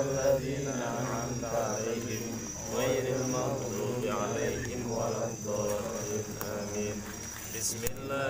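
Night insects chirping steadily in a high, even trill, under a man's low murmured prayer recitation that the insects' sound runs beneath.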